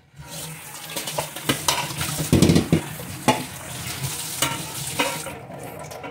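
Kitchen tap running into a perforated aluminium colander over a stainless-steel sink: a steady splashing hiss with scattered knocks and clatters of the metal colander. The sound eases off about five seconds in.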